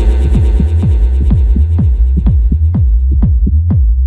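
Tech house music: a steady electronic kick drum in a fast, even beat over a sustained deep bass. The upper part of the mix fades away over the first couple of seconds, leaving mostly kick and bass.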